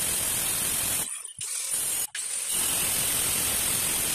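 Handheld electric angle grinder with a cutting disc running steadily against a granite slab, a loud, hissy whir, with two brief drop-outs about a second and two seconds in.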